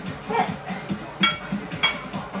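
Two sharp, ringing clinks about half a second apart, a kitchen utensil knocking against a dish, over background music with a steady beat.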